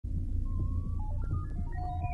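Cosmic-style electronic dance music starting at once: a throbbing low synth pulse under a synthesizer melody of short notes climbing in steps.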